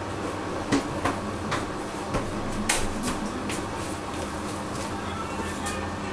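Hotpoint Ultima WT960G washing machine tumbling a wash load: a steady motor hum and sloshing, with irregular sharp clicks and knocks as the laundry and drum turn.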